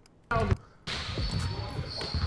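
Basketball game sounds in a gym: a basketball bouncing on an indoor court with uneven thuds, starting about a second in after a near-silent start and a short voice.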